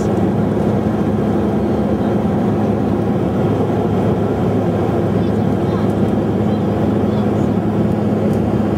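Steady cabin noise of an airliner in flight: an even rush of air and engines with a low drone under it, unchanging throughout.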